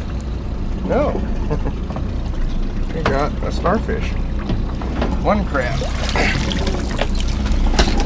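A wire crab pot hauled up out of seawater by its rope, with water pouring and dripping off the mesh as it is lifted aboard, over a steady low hum.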